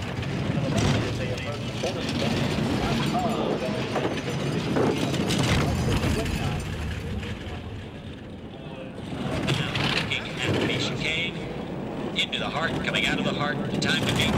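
Four-man bobsled running down an ice track, its runners rushing and rumbling over the ice, dipping in loudness briefly about two-thirds of the way in.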